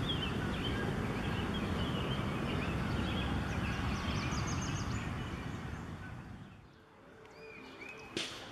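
Small birds chirping, with a quick run of high notes about four seconds in, over a steady low rumble of background noise. It all fades away near the end.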